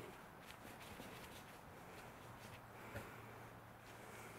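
Near silence: room tone with a faint steady hum and a few faint small clicks.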